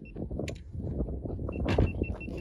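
Footsteps on dirt as a handheld camera is carried toward the target table, with wind rumbling on the microphone and a few short knocks.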